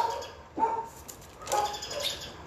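Thin Bible pages rustling as they are leafed through, with two short pitched calls, about half a second in and about a second and a half in.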